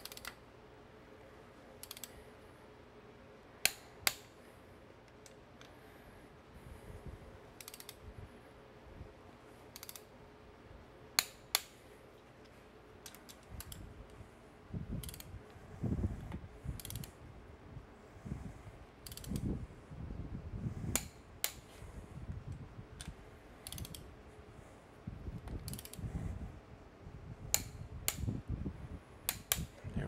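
A ratchet and a click-type torque wrench working on intake manifold bolts, tightening them to torque spec. Scattered ratcheting clicks run through, with two loud double clicks near 4 s and 11 s in. From about halfway there are duller knocks and rattling as the tools are handled on the engine.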